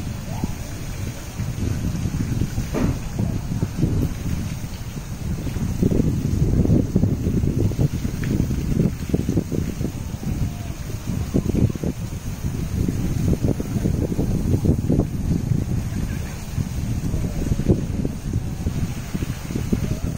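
Wind buffeting the microphone, a gusty low rumble that swells and fades unevenly.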